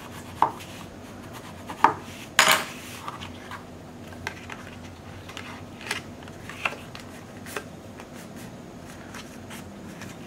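Cardstock being handled on a craft mat: a bone folder pressed along the freshly glued edge of the paper pocket, then the card lifted and folded. This gives scattered sharp taps and rustles, the loudest about two and a half seconds in.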